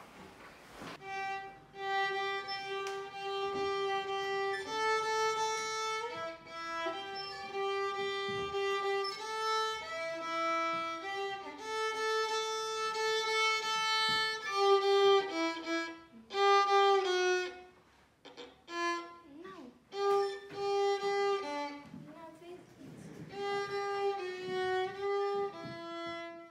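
Solo violin, bowed by a child, playing a slow simple melody of long held notes, with a short break about eighteen seconds in before the tune resumes.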